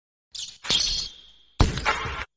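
Logo sting sound effects: a short burst, then a sharp hit about half a second in that leaves a high ringing tone fading away, then a second loud hit near the end that cuts off sharply.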